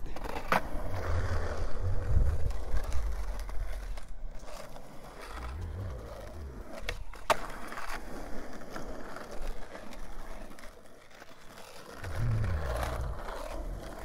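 Skateboard wheels rolling over smooth asphalt, with a sharp clack of the board about half a second in and another about seven seconds in. The rolling fades for a couple of seconds near the end, then comes back.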